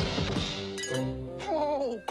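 Cartoon score music with a clattering crash sound effect at the start, a brief burst of rattling strokes, then held music notes.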